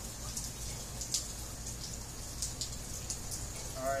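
Rain falling, with scattered, irregular sharp drip-like ticks over a steady low hum.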